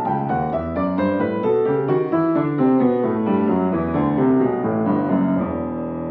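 Piano being played: fast passages of many quick notes, a run stepping downward in pitch over the first couple of seconds, then busy figures in the middle register.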